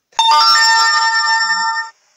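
Notes from an online virtual piano played on the computer keyboard and heard through the computer's speakers. One note starts with a sharp attack, a second note joins about half a second in, and both ring steadily before cutting off together near the end.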